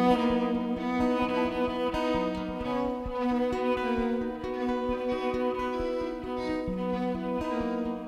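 Live ensemble music with no vocals: violin and cello play held, bowed notes over guitar, with a steady low rhythmic pulse underneath.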